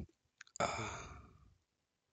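A man's drawn-out sighing 'uhh', about a second long, starting about half a second in, with a short click just before it.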